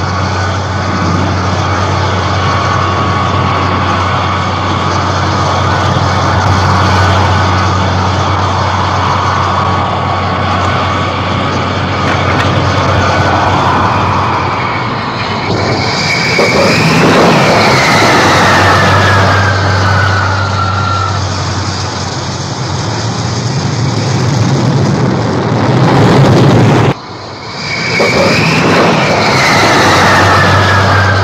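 Vought F-8 Crusader jet engines (Pratt & Whitney J57 turbojets) running at high power on a carrier flight deck, loud and steady. About halfway through, a jet's whine glides downward as an aircraft launches and pulls away. After a sudden brief drop in sound near the end, a similar falling whine returns.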